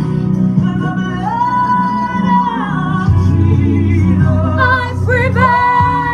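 A woman singing a song over a steady instrumental backing with a low bass line. She holds a long note from about a second in to about two and a half seconds, then sings a run of shorter, rising phrases near the end.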